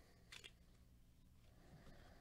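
Near silence with a faint low hum, and one brief soft scrape of trading cards sliding against each other in gloved hands, about a third of a second in.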